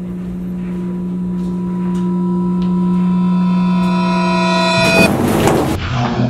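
A steady low droning note swells louder and brighter for about five seconds as higher overtones fade in one by one, in the manner of an edited-in build-up effect. Near the end it breaks off into a loud, dense crash of noise.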